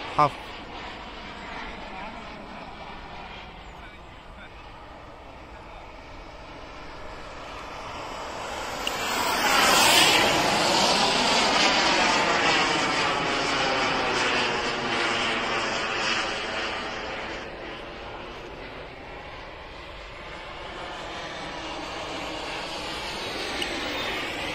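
SW190 turbine of a 2.6 m L-39 model jet flying past. Its rushing whine swells to its loudest about ten seconds in, with a sweeping, phasing change in tone as it passes close, then fades and grows a little again near the end.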